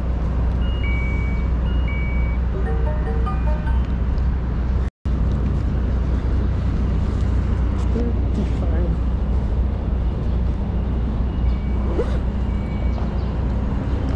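Steady low street rumble on a body-worn camera microphone, with short two-pitch electronic beeps in the first two seconds and again near the end, and a brief run of stepped tones around three seconds in. The sound cuts out completely for a moment about five seconds in.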